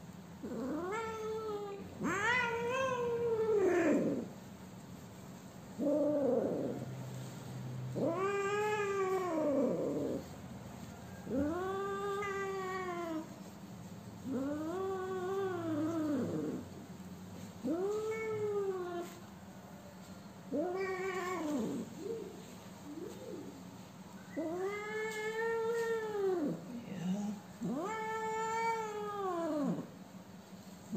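A domestic cat meowing loudly and repeatedly, about eleven long calls, one every two to three seconds. Each call rises and then falls in pitch.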